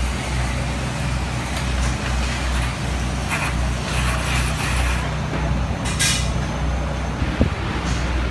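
Steady low mechanical hum, with a short, sharp hiss about six seconds in and a single knock shortly before the end.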